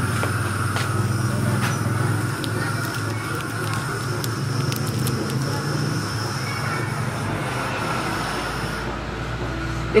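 Steady background noise of a café: an even low rumble and hum with faint voices.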